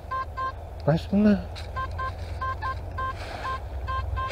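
Nokta Makro Simplex+ metal detector giving about a dozen short beeps of the same pitch as the coil sweeps back and forth over a buried metal target, with a brief voice exclamation about a second in.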